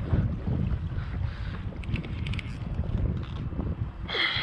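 Wind buffeting the microphone of an action camera on a kayak, an uneven low rumble. A few faint clicks come about two seconds in.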